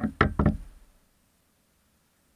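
Two sharp knocks on the bait boat's hull, about a quarter second apart, fading out within the first second and followed by near silence.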